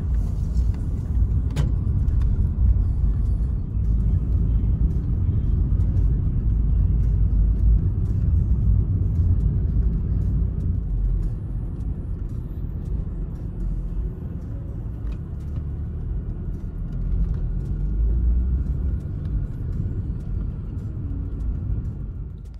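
Steady low rumble of a car driving, heard from inside the cabin, easing off a little partway through as it slows. A single short click sounds about a second and a half in.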